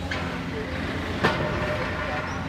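Demolition excavator at work on a building: a steady low engine drone, with one sharp crack about a second and a quarter in.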